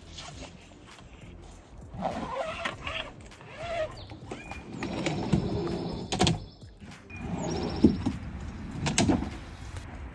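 Rustling as the fridge's fabric insulated cover is pulled over it. Then an ICECO fridge slide's steel drawer rails run out of the truck bed carrying the loaded fridge, with rolling, scraping and a few sharp clacks, the loudest near the end as the slide reaches full extension.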